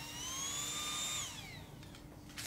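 A small motor's high whine: it rises in pitch for about a second, holds briefly, then falls away and fades, over a steady low hum.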